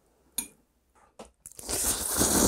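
A single light click of a utensil on a plate, then near the end a loud slurp as a mouthful of jjajang instant noodles is sucked in.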